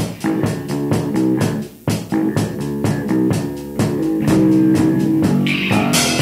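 Instrumental passage of a rock song: electric guitar, bass guitar and a drum kit playing a steady beat, with a brief break a little under two seconds in.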